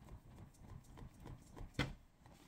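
Wooden-slatted folding fan waved rapidly close to the face: a faint, quick, regular flapping with light clicks of the slats, and one louder clack near the end.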